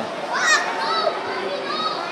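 A child's high-pitched voice shrieks about half a second in, rising sharply in pitch, then calls out twice more, shorter and lower. Crowd chatter runs underneath.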